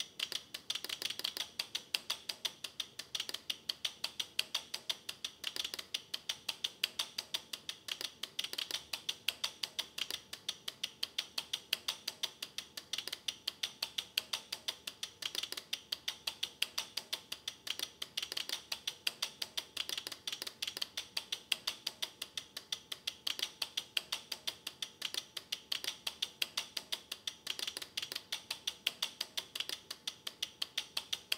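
Electromechanical relays clicking in a rapid, steady stream of about four clicks a second as a relay computer's tape program loader decodes clock and data pulses from a stereo audio cassette and latches the program into memory.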